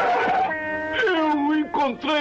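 A cartoon character's wordless yells and cries in a row, one held at a steady pitch, the others wavering up and down.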